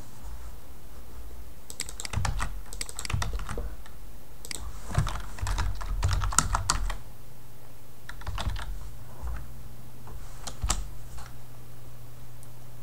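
Typing on a computer keyboard: quick runs of key clicks in several short bursts with pauses between them, over a steady low hum.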